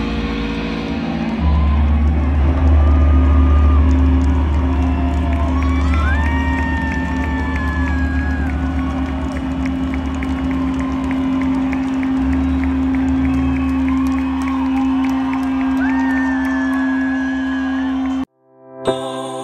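A loud, steady low drone keeps ringing from the rock band's stage amplifiers after the song has ended, with the crowd cheering and giving several short high whistles over it.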